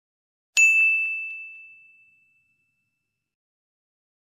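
A single bright ding sound effect, struck once about half a second in and ringing out over about two seconds.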